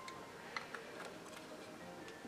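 Faint light clicks and taps of a small gold metal powder compact being handled and fitted together in the hands, a few short ticks spread over the first second and a half.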